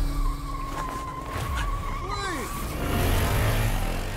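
A vehicle's tyres squealing: one long steady squeal, with a shorter squeal falling in pitch about two seconds in, over a low engine rumble.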